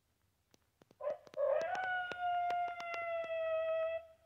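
A long howl starting about a second in, rough at the outset, then held on one pitch that sinks slowly. It is peppered with sharp clicks.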